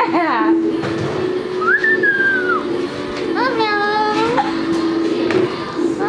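A white cockatoo whistling and calling over music: a single rising-and-falling whistle about two seconds in, then a longer pitched call about a second later, with the music's steady held tone underneath.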